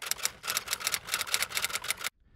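A typewriter sound effect: a quick run of key strikes, about eight to ten a second, cutting off sharply at the end.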